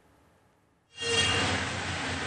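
Near silence, then about a second in the outdoor reporter's live microphone feed cuts in with steady background noise from the roadside: an even hiss over a low hum.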